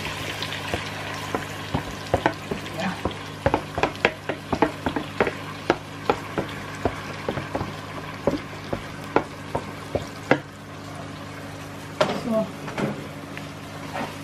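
Browned meat sizzling in an enamelled cast-iron pot, with a run of small clicks and knocks from handling the pot, lid and seasoning, over a steady low hum. The knocks thin out after about ten seconds.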